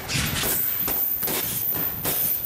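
Boxing gloves landing hooks on heavy punching bags: about five dull thuds at uneven spacing over two seconds.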